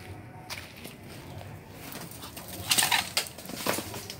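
Leaves rustling and brushing against the phone as it moves in among the plants: a short cluster of loud swishes a little under three seconds in, over a faint steady background.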